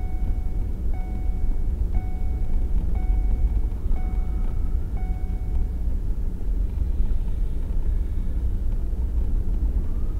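Low, steady rumble of a vehicle's engine and tyres on a snowy road, heard from inside the cab at slow speed. For the first six seconds a beep sounds about once a second, six times, then stops.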